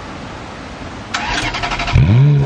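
Ferrari F430 Scuderia's 4.3-litre V8 being started: about a second in, the starter motor cranks with a rapid, even chatter, and the engine catches with a sharp bang right at the end.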